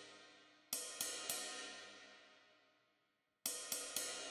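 Sampled ride cymbal in Logic Pro X's Drum Kit Designer, struck three times in quick succession and ringing out, fading over about two seconds. A second group of three strikes comes near the end. The cymbal is being dampened so that it rings a little less.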